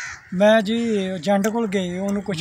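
A man talking in conversation, with a brief harsh call at the very start.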